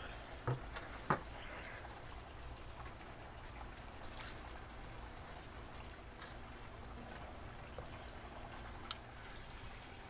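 Faint steady hiss with a few light clicks of a metal spatula and tongs as cooked fish fillets are lifted off a grill mat on a kamado grill.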